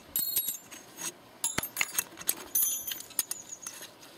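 Scattered light metal clinks and pings, a few with a short high ring, as gloved hands handle a 36-volt e-bike rear hub motor with its freewheel cassette clamped in a vise.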